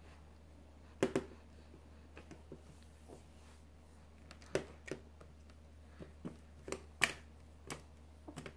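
A plastic baby bottle knocking and clicking against a high chair's plastic tray as a baby handles it: a string of scattered light knocks, the loudest about a second in and about seven seconds in, over a steady low hum.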